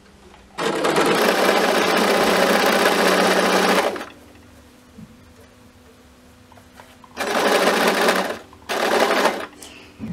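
Electric sewing machine stitching a hem through a wide hemmer foot: one run of about three seconds, a pause, then two short bursts near the end.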